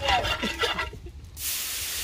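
Water poured into a hot pot of curry frying in butter over a wood fire, setting off a sudden loud hiss and sizzle of steam about one and a half seconds in. The water is added because the curry is starting to burn.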